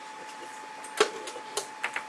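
Four small, sharp clicks and taps of tools or small objects being handled, starting about halfway through, the first the loudest, over a steady faint high hum.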